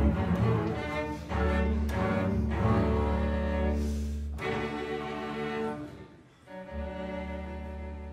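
Cello and double bass bowing sustained notes in a live string chamber ensemble. The music breaks off briefly about six seconds in, then a long held note slowly fades.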